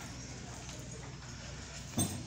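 Footsteps on stone paving in a narrow alley, faint and steady.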